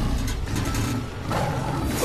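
A tiger's deep, rumbling growl, with a rougher swell about one and a half seconds in.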